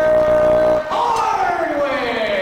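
A man's loud, drawn-out vocal with no words: one long held note, then a long slide down in pitch starting about a second in.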